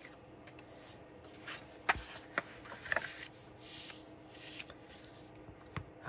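Scrapbook paper being folded and creased: soft rustling and rubbing as the fold is pressed and smoothed down with a bone folder and fingers, with a few sharp little taps about two to three seconds in and again near the end.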